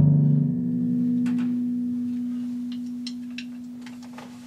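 Timpani ringing out after a loud stroke: the lower drum's note stops about half a second in, as if damped, while a single steady note on another drum keeps ringing and slowly fades. A few faint clicks come in the second half.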